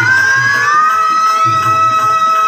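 Live stage-drama song: a singer holds one long high note that slides up and then stays level, over a steady hand-drum beat.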